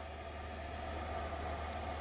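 Steady low hum with a soft hiss: the background noise of a Phenom 300 cockpit with its avionics powered from ground power.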